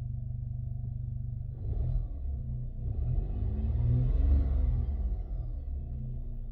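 Turbocharged Volkswagen car engine idling, with a small rise in revs about two seconds in and then a throttle blip from about three to five seconds in, the engine note climbing and falling back to idle.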